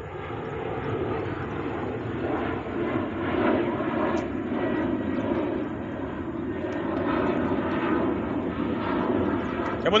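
A steady low engine drone, with people talking in the background.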